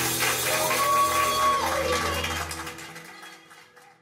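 The band's final chord dies away under applause and a cheer from a small audience in a room. A single held cheer rises about a second in, and everything fades out to near silence by the end.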